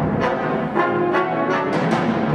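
Wind band playing, the brass section to the fore, with repeated accented chords a few times a second, in a concert hall.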